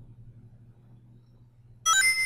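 Faint low hum, then near the end a sudden electronic chime: a quick run of short rising notes that rings on as a bright chord for about half a second. It is a presentation slide's sound effect as new text is animated onto the slide.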